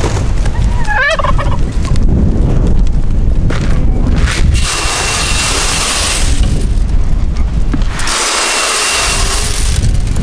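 Strong wind buffeting the microphone with a dense low rumble throughout; about a second in, a turkey tom gobbles once, briefly. Two longer hissing rushes come in the middle and near the end.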